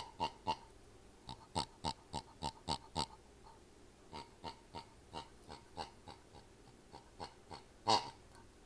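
Yellow rubber pig dog toy squeezed over and over, giving quick short squeaks that each fall in pitch, about three or four a second. A loud run comes in the first three seconds, then a softer run through most of the rest.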